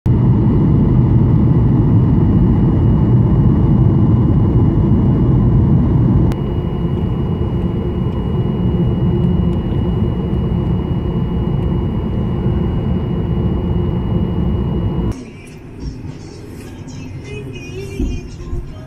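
Jet airliner cabin noise from a window seat: a loud steady rumble of engines and airflow on descent, changing about six seconds in to a slightly quieter rumble with the plane on the ground. About fifteen seconds in it gives way to much quieter cabin sound.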